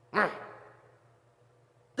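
A man's short, falling "mm" hum through closed lips, a mock huff of annoyance imitating someone who is getting mad.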